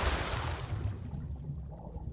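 Dying tail of a logo sting sound effect: a wide rushing noise over a low rumble, fading away steadily, the high part going first.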